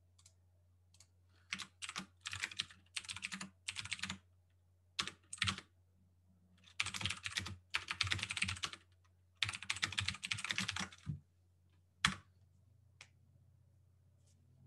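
Typing on a computer keyboard: several bursts of rapid keystrokes with short pauses between, and a single louder key press near the end.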